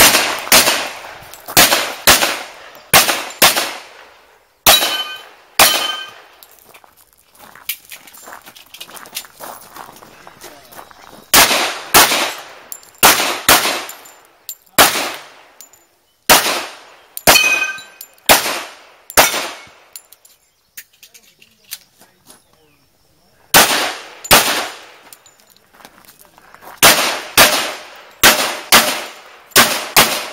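Pistol shots fired in quick pairs and short strings, with gaps of a few seconds between strings; a few shots are followed by the ring of struck steel targets.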